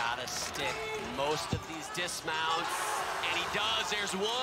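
Men's voices shouting and cheering in short bursts during a high bar routine, with one sharp thud about a second and a half in, the gymnast's dismount landing on the mat.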